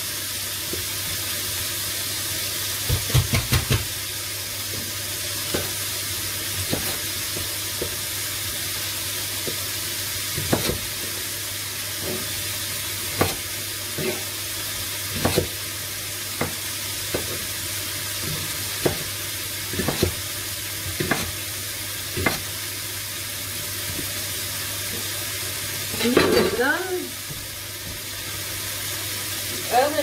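Bacon frying in a pan with a steady sizzle, while a knife chops leek on a cutting board in irregular knocks every second or two. A short voice sound comes near the end.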